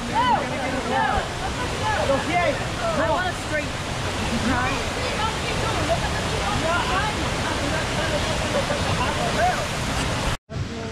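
A rocky creek rushing over stones below a waterfall, a steady wash of water, with many people's voices chattering faintly over it.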